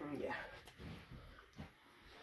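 A child's voice saying a drawn-out "yeah" with a gliding pitch, then a pause with only faint soft sounds.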